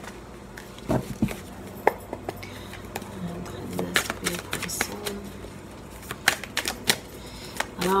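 Tarot cards being handled and shuffled: scattered short, sharp taps and snaps of cards over a faint steady low hum.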